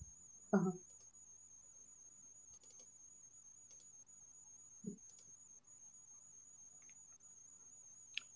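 Near silence on a video-call line after a brief 'uh-huh': only a faint, steady high-pitched electronic whine and a few faint clicks.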